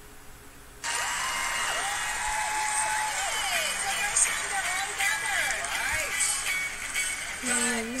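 Playback of a TV singing-competition group performance: a song starts suddenly about a second in, and a singer comes in near the end.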